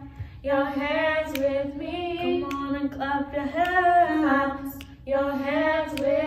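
Women's voices singing a gospel song unaccompanied into handheld microphones, in long held phrases with short breaks between them.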